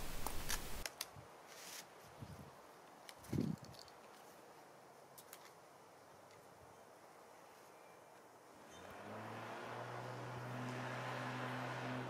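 Handling of a rope coil and metal climbing hardware: a few light clicks and a dull thump about three and a half seconds in. From about nine seconds a steady low engine hum comes up and holds.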